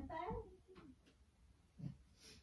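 A cat meowing once, faintly: one drawn-out call that rises and then falls in pitch in the first second.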